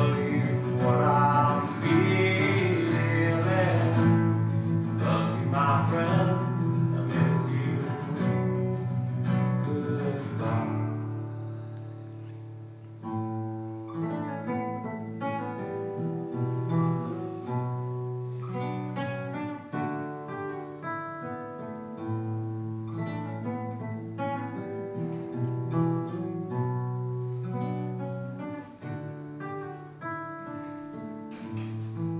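Solo acoustic guitar playing the song's instrumental outro. A wordless wavering voice sings over it for about the first ten seconds, then the guitar goes on alone, a little quieter, in plucked notes.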